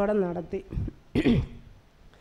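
A woman clears her throat once into a handheld microphone, a little over a second in, just after the end of a spoken phrase.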